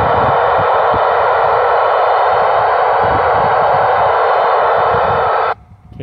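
Loud, steady hiss of receiver noise from a 2m/70cm FM/D-Star mobile radio's speaker while it listens on the satellite's 70 cm downlink. The hiss cuts off abruptly about five and a half seconds in, with a faint low rumble underneath.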